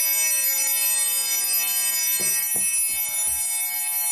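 A sustained electronic synth chord held steady without a break, the held ending of the show's intro jingle.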